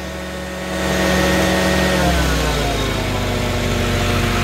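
Prochem Performer 405 truck-mount carpet cleaning unit running. Just under a second in a rushing hiss joins as water is jetted out of the machine, and about two seconds in the engine's pitch drops and settles lower.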